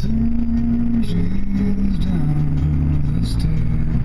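A song sung in long held notes that step down in pitch, over the low steady road rumble inside a moving car.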